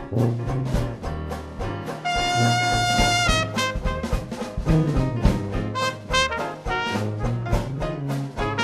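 New Orleans traditional jazz band playing an up-tempo rag: tuba bass line, trumpet, trombone and saxophones over a steady drum beat. One horn holds a long high note about two seconds in.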